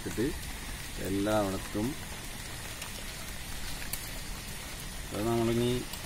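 A man's voice in two short phrases over a steady faint hiss with scattered soft clicks.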